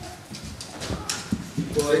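A man speaking into a microphone in a hall. A pause with a few short, soft knocks is broken as his speech resumes near the end.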